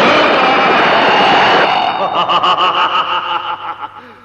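Loud explosion rumble fades out a little under halfway through. A man's villainous cackling laugh follows, in quick, even pulses of about five a second on a steady pitch, and fades toward the end.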